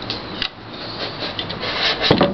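Irregular rubbing and scraping handling noise in short bursts, growing denser and louder through the second half.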